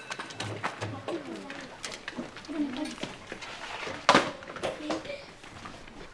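Low chatter of children's voices in a classroom, with scattered knocks and clicks from desks and chairs as the pupils move about. One sharp knock about four seconds in is the loudest sound.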